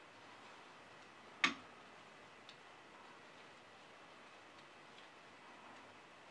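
Blue 9 mm knitting needles clicking against each other as stitches are worked: one sharp click about one and a half seconds in, then a few faint ticks.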